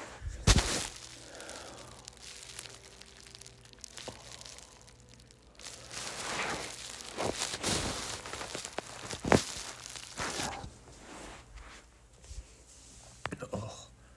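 Rustling and handling noise from a phone being moved about, with a sharp knock just after the start and another about nine seconds in.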